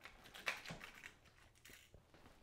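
Faint, irregular clicks and light rustles of small objects being handled out of view, a handful of them in two seconds, the clearest about half a second in.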